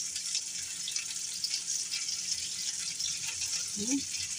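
A steady high hiss in the background, with a few faint light ticks.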